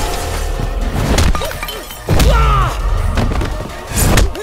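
Film fight soundtrack: music with a heavy low beat under sudden crashes of smashing wood and breaking glass, with a sharp hit about a second in and another at the end.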